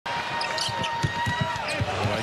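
Basketball being dribbled on a hardwood court: a quick, slightly uneven run of low thumps, about five a second.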